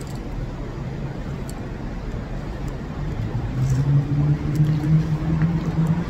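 A car engine running in a concrete parking garage: a low rumble, with a steady hum that grows louder through the second half as the vehicle nears.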